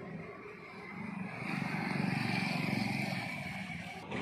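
A motor vehicle engine passing close by, growing louder from about a second in to a peak and then easing off.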